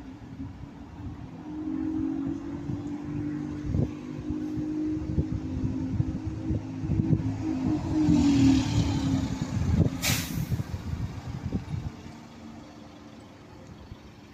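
Single-deck bus pulling away and driving past, its engine note building and loudest about eight to ten seconds in, with a brief hiss and a sharp crack about ten seconds in, then fading as it leaves.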